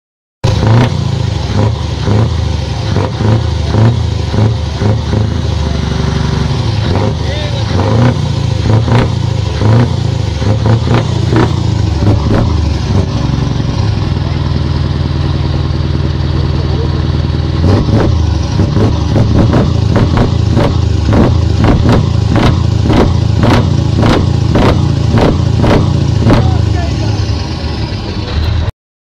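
Scania R500 truck's V8 diesel being revved hard through its side exhaust pipe, the engine note swelling and falling. In the second half the throttle is blipped quickly, about two sharp revs a second.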